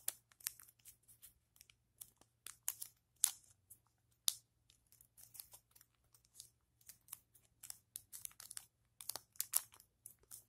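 Paper being folded and creased by hand: irregular crisp crackles and light taps as the sheet is bent, pressed and handled. Origami paper.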